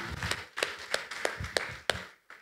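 A few scattered sharp taps and knocks, about five spread unevenly over a second and a half, with a low thump among them.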